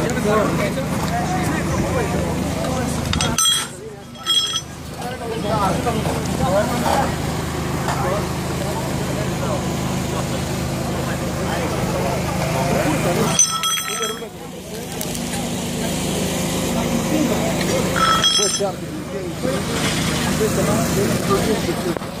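Indistinct voices talking over a steady low hum. The sound dips out briefly three times.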